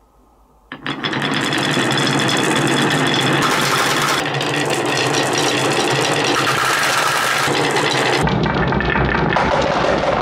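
Dozens of marbles let go at once, rolling and clattering down the wavy grooves of a wooden marble-run slope: a dense, continuous rattle that starts suddenly about a second in.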